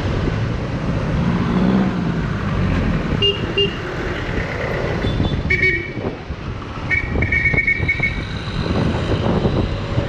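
Scooter ride in traffic: steady engine, road and wind noise, with short vehicle horn toots. There are two quick beeps about three seconds in, another in the middle, and a longer, pulsing horn near the end.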